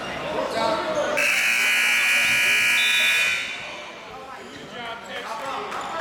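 Gym scoreboard buzzer sounding about a second in: one steady electronic tone held for about two seconds, over the voices of the crowd.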